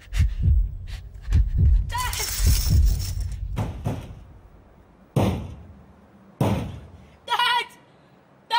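A run of heavy thumps and thuds, with a strained voice crying out about two seconds in. Then two sudden bangs that die away, and a short cry near the end.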